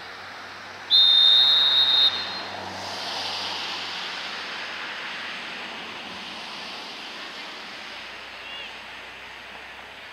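Referee's whistle blown in one long, steady blast of about a second, followed by a steady wash of noise.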